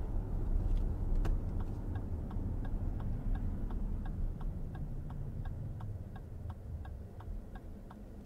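Turn-signal indicator inside a 2023 Lexus RX 500h's cabin clicking at an even pace of about three ticks a second. It runs over low road rumble that fades as the car slows.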